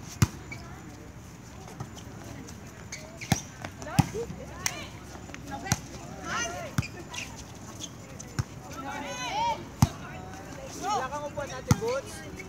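Volleyball rally on an outdoor hard court: about nine sharp smacks of hands and arms striking the ball, the loudest near the start, about four seconds in, near ten seconds and near the end. Short high shouted calls from players come between the hits.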